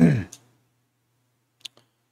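A man's short, low vocal sound falling in pitch at the very start, followed by a click. Then near silence over a faint steady low hum, broken by two small clicks near the end.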